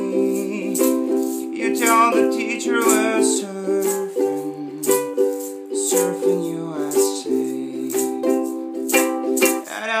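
Soprano ukulele strummed in a steady rhythm, with a man singing along.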